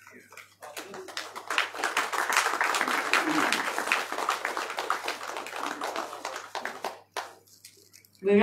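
A crowd applauding, starting about a second in and dying away about seven seconds in.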